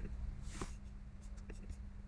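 Quiet room tone with a low steady electrical hum and a few soft clicks, three of them in the first second and a half.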